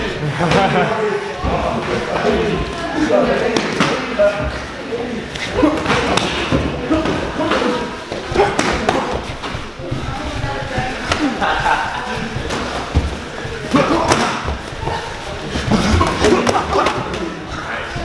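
Muay Thai sparring: gloved punches and shin-guarded kicks landing in irregular thuds and slaps, with voices talking over them.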